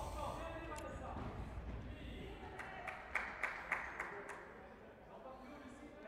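Futsal game in a sports hall, heard faintly: several short, sharp ball kicks, most of them in the middle of the stretch, and distant players' voices echoing in the hall.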